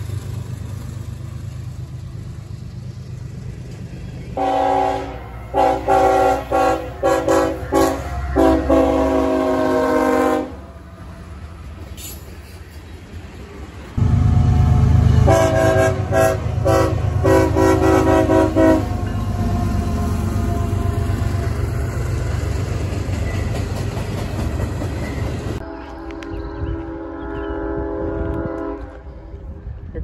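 Freight locomotive air horn sounding in quick runs of short blasts, twice, over the low rumble of a train rolling by. Near the end comes one longer held horn chord.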